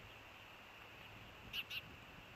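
A bird gives two short, high call notes in quick succession, about one and a half seconds in.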